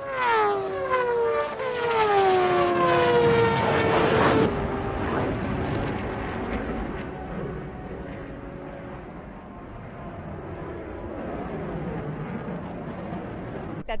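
A high-revving racing engine passes at speed, its pitch falling steadily as it goes by, and then cuts off suddenly about four and a half seconds in. It gives way to the steady, duller roar of an F-16 fighter jet's engine on the runway.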